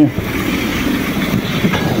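Steady rushing of a river running high after rain.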